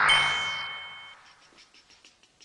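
A sound-effect sting: a sudden burst of noise with a bright bell-like ding ringing over it, fading away over about a second.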